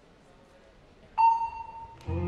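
A single electronic beep, a steady mid-pitched tone that sounds suddenly a little past halfway and holds for nearly a second: the start signal telling the gymnast she may begin her floor routine. Faint arena room noise comes before it.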